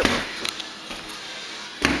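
Thumps and knocks of a handheld camera being grabbed and jostled: one thump at the start, a light click, and another thump near the end.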